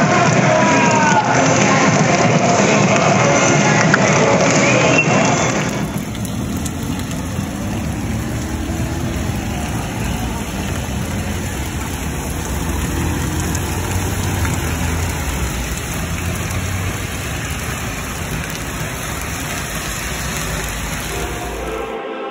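Steady rain falling on a wet city street, with traffic going by. In the first five seconds or so, raised voices ring out over the rain, and then the sound drops to a lower, even rain-and-traffic hiss.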